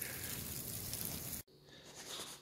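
A faint, steady outdoor hiss with no distinct events, which cuts off suddenly about one and a half seconds in, leaving fainter indoor room tone.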